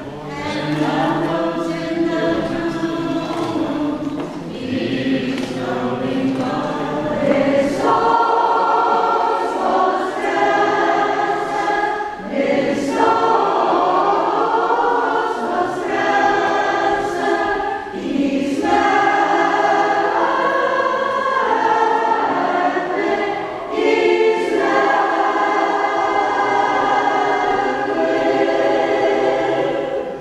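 Choir singing a liturgical hymn in phrases a few seconds long, with short breaths between them.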